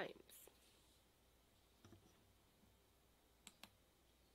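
Near silence with two quick clicks a fraction of a second apart about three and a half seconds in: a computer mouse clicked to advance a presentation slide.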